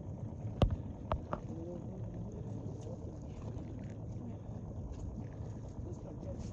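Steady low rumble of wind on the microphone aboard a boat at sea. A sharp knock comes about half a second in and two softer ones follow within the next second.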